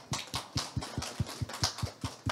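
A small audience applauding, with many uneven hand claps.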